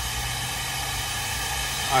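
Car-wash vacuum running steadily, a low hum under an even hiss.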